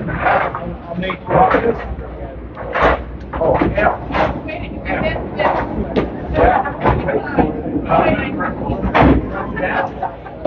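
Candlepin bowling alley sounds: repeated sharp clattering knocks of balls and pins over a low rolling rumble, with people talking in the background.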